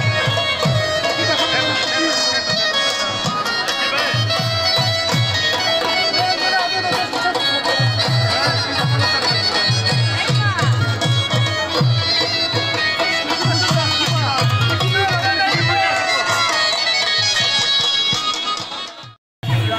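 Attan dance music: a shrill reed pipe, the surna, plays a melody over a held drone, driven by a repeating dhol drum beat.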